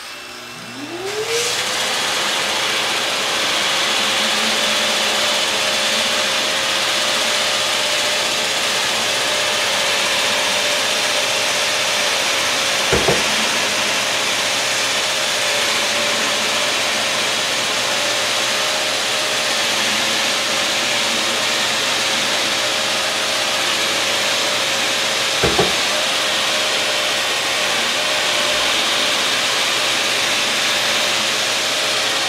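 Festool Planex Easy long-reach drywall sander, with its Festool CT36 AC dust extractor pulling air through the head, sanding painted popcorn ceiling texture. The motor spins up, its pitch rising over the first second or two, then runs at a steady hum over a loud rush of air, with two short thuds about twelve seconds apart.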